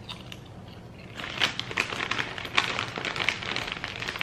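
Skinny Pop popcorn being chewed close to the microphone: a run of quick crisp crunches that starts about a second in.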